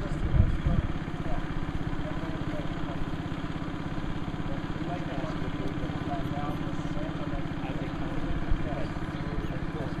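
An engine idling steadily with an even, rapid pulse, under faint background voices of people talking.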